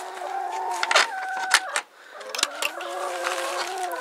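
Hens in the coop making long, drawn-out, steady calls, two of them with a short break just before the midpoint, mixed with sharp clicks and knocks.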